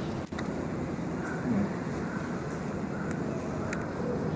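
Steady low background room noise with no distinct event, briefly dipping about a third of a second in.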